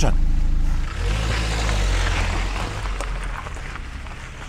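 Small car's engine idling, heard from inside the cabin, for about a second; then a rushing noise with a low rumble that gradually fades away.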